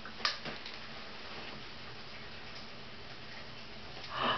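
A single short, sharp click about a quarter second in, then steady low room hiss.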